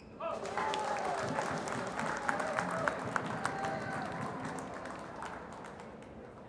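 Spectators applauding with shouts and calls, breaking out suddenly just after the start and slowly dying down.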